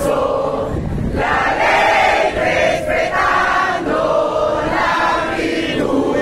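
Large crowd of demonstrators chanting together in unison, in short repeated phrases about a second long.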